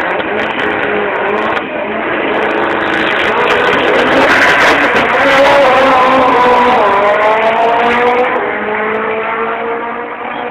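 Two drag-racing cars launching and accelerating down the strip, their engines loud, with the pitch climbing, dropping once about seven seconds in as a gear change, then climbing again.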